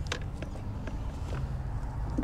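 A few faint plastic clicks and rubbing as a hand works at the plastic cowl trim over the engine cover of a car with its engine off, over a low steady rumble.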